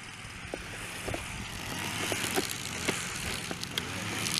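Battery-powered Groove-N-Go ride-on toy scooter driving off, its small electric motor running and plastic wheels rolling over grass and dirt, growing steadily louder as it gets going, with a few light clicks and knocks.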